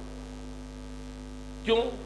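Steady electrical mains hum in the audio chain, a buzz made of many evenly spaced tones, heard through a pause in speech. A man's voice says one short word near the end.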